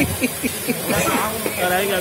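People talking at close range over a steady hiss.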